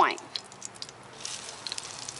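Hot olive oil and butter in a skillet starting to sizzle as a floured whole trout is laid into it; the sizzle rises about a second in, with a few small pops.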